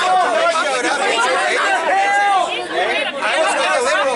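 Several people talking over one another in a heated argument, with no one voice standing out clearly.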